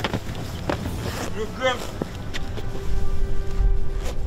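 Wind rumbling and buffeting on the microphone, with a few sharp knocks scattered through it and a short voice about a second in.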